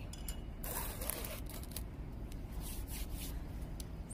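Watercolour paper rustling and sliding as the sheet is shifted, a dry scraping hiss about a second in, then a few fainter rubs, over a steady low hum.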